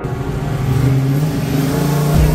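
Car engine running, a steady low note that rises a little in pitch about half a second in and holds.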